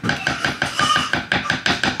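A quick, even series of light knocks, about seven or eight a second, each with a short ringing note, like a utensil tapping against a pot.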